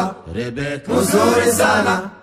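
Choir singing a Swahili gospel song, the voices moving in phrases over steady low notes.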